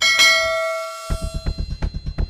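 A bright bell-like ding sound effect, the notification-bell chime of a subscribe-button animation, strikes once and rings away over about a second. About a second in, music with a fast, even pulsing beat starts.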